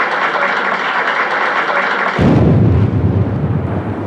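A steady, noisy hiss, then a sudden deep rumbling boom of an explosion about halfway in.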